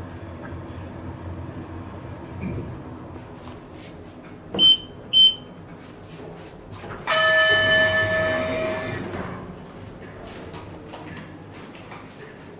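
Schindler 3300 AP machine-room-less elevator signalling from inside the car: a low running hum, then two short high beeps about half a second apart, and a couple of seconds later a steady electronic tone lasting about two seconds that fades out.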